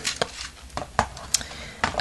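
A few scattered light clicks and knocks of plastic LEGO Technic parts as the turntable mechanism is turned and handled by hand.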